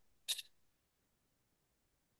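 Near silence, broken only by one short hiss about a quarter second in, like a quick breath or mouth sound.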